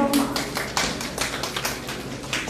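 Scattered audience applause: separate hand claps, several a second, coming irregularly.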